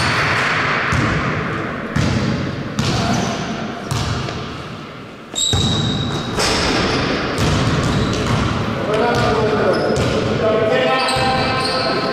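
A basketball being dribbled and bounced on a gym floor, with repeated sharp strikes that ring out in the large hall. Players' voices call out over it.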